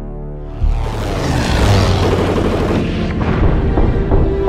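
A cinematic explosion: a sudden boom about half a second in, followed by a long rush of blast noise and debris lasting a couple of seconds, with a few sharp impacts near the end. Dramatic trailer music plays underneath.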